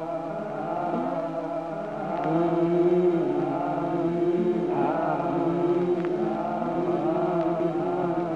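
A sample from a KESAKO Player run through a 288v time domain processor, heard as a sustained, chant-like drone of layered pitched tones whose pitch wavers slowly. It grows louder a little over two seconds in and shifts in pitch about halfway through.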